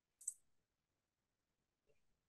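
Near silence, broken by one brief sharp click about a quarter of a second in and a faint soft knock just before the end.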